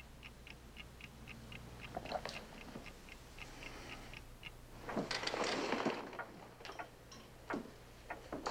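A clock ticking at a steady even rate, with a brief knock about two seconds in and a longer rustling scrape of movement about five seconds in.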